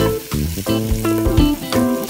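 Pre-boiled beef pieces frying in oil and spices in an aluminium pot, sizzling as they are stirred with a spatula, under background music with a steady rhythm of pitched notes.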